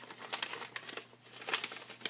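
Origami paper rustling and crinkling in the hands as the folded paper gift bag is opened up: irregular small crackles, with a louder cluster about a second and a half in.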